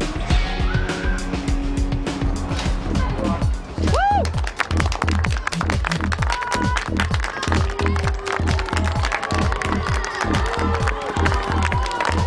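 Background music with a steady driving beat and a rising swoop about four seconds in.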